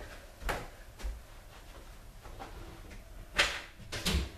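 Footsteps on wooden stairs, two steps in the first second, then a short, louder knock or scrape about three and a half seconds in as he reaches the landing.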